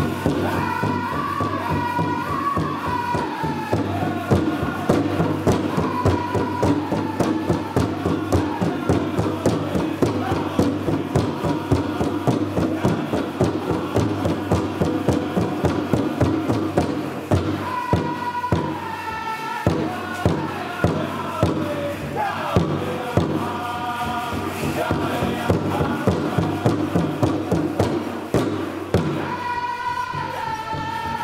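Powwow drum group singing a jingle dress song in high voices over a steady, evenly struck drumbeat, with a brief break a little past halfway. The metal cones of the dancers' jingle dresses jingle along with the beat.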